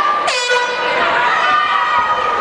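A short air horn blast about a quarter second in, signalling the start of the round, over the voices of the crowd.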